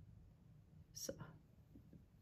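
Near silence: room tone, with one softly spoken word about a second in.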